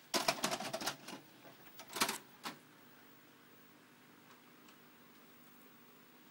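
A VHS cassette going into a VCR: a rapid run of plastic-and-metal clicks and clunks for about a second as the loading mechanism takes the tape in, then two more clicks about two seconds and two and a half seconds in, and a couple of faint ticks later over a low hum.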